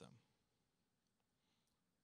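Near silence after a man's spoken word trails off at the start, with a couple of very faint clicks in the room tone.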